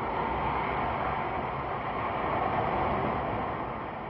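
Jet engines of a Boeing 747 in flight, its Pratt & Whitney JT9D turbofans making a steady rushing noise that swells slightly and then begins to fade near the end.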